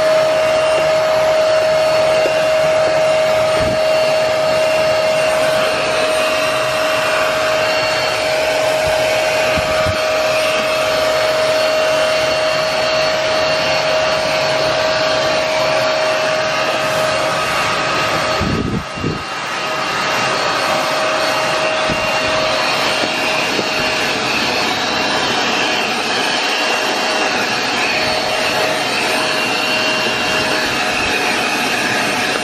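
Vax carpet cleaner's suction motor running steadily with a high whine while the handheld tool is drawn over carpet, sucking the shampoo solution back up. The sound dips briefly about two-thirds of the way through, then comes back to full.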